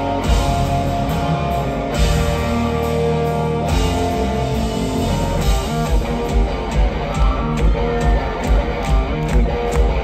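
Live hard rock band playing loud electric guitars and drums, heard from the crowd. Big chord hits come at the start, then a steady beat of about two drum hits a second joins in about halfway through.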